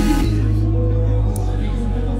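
Loop-station beatbox performance: layered vocal loops over a deep, sustained bass line, with a bending pitched vocal line at the start. The treble cuts away about a quarter second in, leaving mostly the bass loop.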